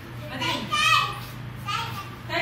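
Young children's voices calling out answers, with one loud, high-pitched call about half a second in and a shorter one near the end, over a steady low hum.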